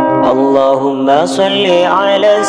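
Acoustic sholawat song: a voice singing a melismatic devotional line, its pitch sliding up and down, over steady acoustic accompaniment.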